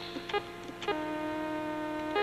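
Steady electrical hum with a few short electronic blips, then, from about halfway, a sustained buzzing electronic tone of several pitches at once.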